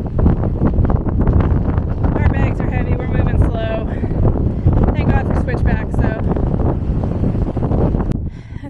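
Strong wind buffeting the camera microphone with a loud, constant rumble. Snatches of a voice come through faintly about two seconds in and again around five seconds.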